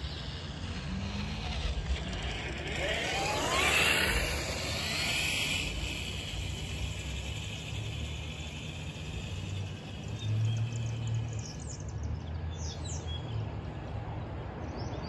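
A vehicle goes by unseen: its whine rises in pitch, peaks about four seconds in and fades, over a steady low hum. Birds chirp briefly near the end.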